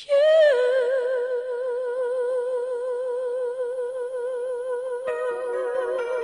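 A high singing voice holds one long note with steady vibrato, unaccompanied, after a short slide down at the start.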